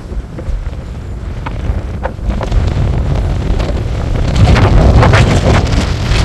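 Strong gusty wind buffeting the microphone: a rough rumble that builds and is loudest about five seconds in.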